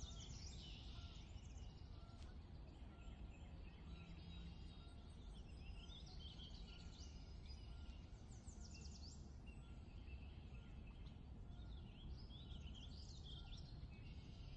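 Very faint background birds chirping, with many short chirps and falling trills scattered throughout, over a low steady hum. Otherwise near silence.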